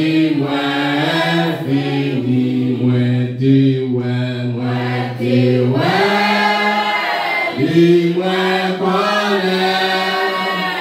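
A man's voice on a microphone leads a church congregation singing a slow hymn in long held notes. The pitch steps up about six seconds in.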